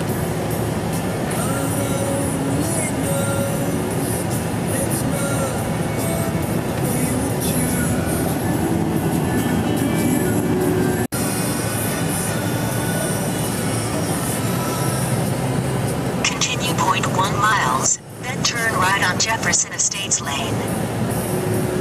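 Music and talk from a car radio over the steady road and engine noise of a car driving on snow-covered streets, heard inside the cabin. The sound cuts out for an instant about eleven seconds in.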